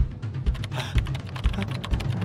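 Rapid computer keyboard typing, a quick run of keystrokes, over background music with a steady bass beat about twice a second.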